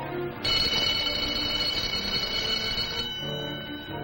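A school bell ringing, starting suddenly about half a second in and stopping after about two and a half seconds, signalling the end of class, over background film music.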